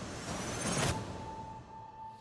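Horror-trailer sound design: a rising noisy whoosh that cuts off about a second in, leaving a single steady tone.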